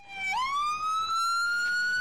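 A military ambulance's siren wailing: its falling tone bottoms out about a third of a second in, then swoops back up and keeps climbing slowly in pitch.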